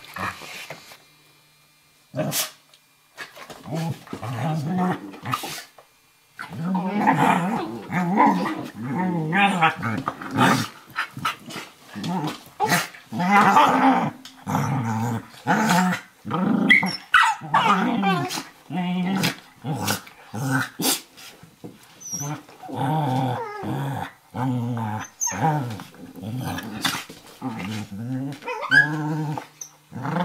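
A Eurohound puppy and a Nova Scotia Duck Tolling Retriever growling at each other in rough play-wrestling, in bouts that sound fierce but are play, with short snaps and scuffles between them. There is a brief quiet gap near the start and another about six seconds in.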